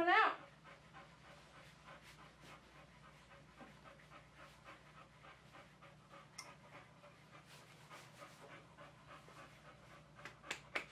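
A boxer dog panting faintly and steadily, about two to three breaths a second.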